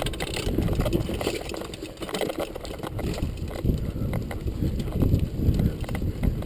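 Mountain bike descending a leaf-covered dirt trail: tyres rolling over dirt and dry leaves, with the bike rattling and knocking over bumps throughout. A low rumble, typical of wind on the microphone at speed, runs underneath.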